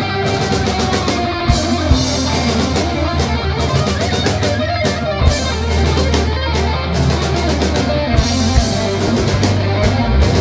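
Thrash metal band playing live: distorted electric guitars over bass and a drum kit, loud and continuous, with drum and cymbal hits throughout.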